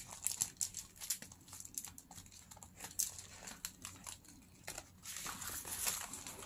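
Paper rustling and crinkling as hands press and handle a handmade journal block of painted paper-bag pages: many short scattered rustles, with a longer, denser rustle about five seconds in as the book is opened.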